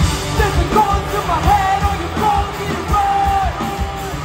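A live punk rock band playing loudly: guitars and drums under a sung, shouted lead vocal that holds one note near the end.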